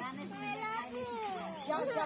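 Several people's voices talking over one another, among them a child's high-pitched voice.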